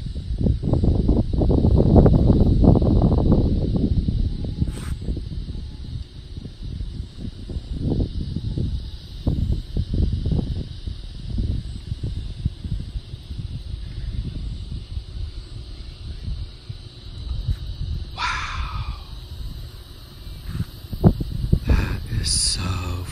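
Wind buffeting the phone's microphone in gusts, a low rumble that is strongest in the first few seconds and rises and falls throughout. Near the end a short sound falls in pitch.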